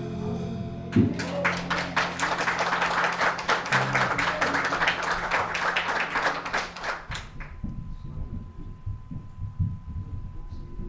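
Applause from a church congregation, lasting about six seconds, over the band's last low chord ringing out. It begins with a single low hit about a second in and dies away after about seven seconds.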